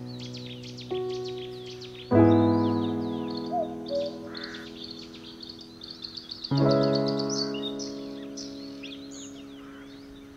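Slow relaxation piano music: soft chords struck about a second in, again at two seconds and once more past the middle, each left to ring out and fade. Under them runs a bed of songbirds chirping.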